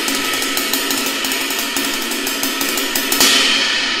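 Ride cymbal struck with a wooden drumstick in a fast, even stream of strokes, played with the push-pull technique: pushing down and then pulling up with the fingers off the cymbal's rebound. A louder, brighter stroke comes a little after three seconds in, then the playing stops and the cymbal rings on.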